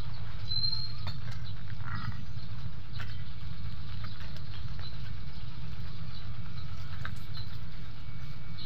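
Scattered light clicks and knocks of stones and vines being handled in a rocky hole, over a steady low rumble of wind on the microphone.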